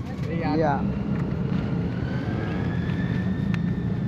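A steady low engine rumble, with a thin whine that rises and falls through the middle. A few faint crinkles of a plastic bag being opened and filled sit on top.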